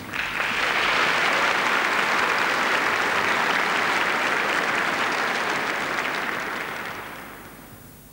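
Large audience applauding: it swells up right at the start, holds steady, and dies away over the last second or so.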